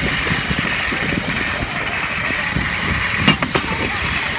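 Rail trolley rolling along the tracks: a steady running noise with rumble from wind on the microphone, and two sharp clicks close together near the end.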